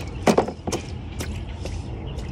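Small plastic toys knocking against a child's plastic water table: a few light, sharp knocks, the loudest about a quarter of a second in, over a steady low rumble.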